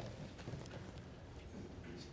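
Quiet room tone with a low hum and a few light knocks.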